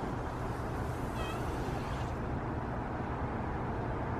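Steady outdoor background hiss over a low hum; the higher part of the hiss dies away about two seconds in. A short, high chirp is heard about a second in.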